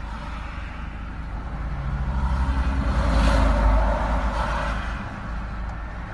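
Vehicle noise heard from inside an Iveco van's cabin: a steady low engine rumble, with engine and tyre noise swelling to a peak about halfway through and then fading.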